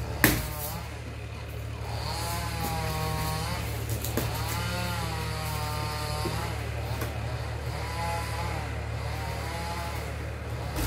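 A small engine revs up and down several times, each rise and fall lasting one to two seconds, over a steady low hum. There is a sharp snap about a third of a second in.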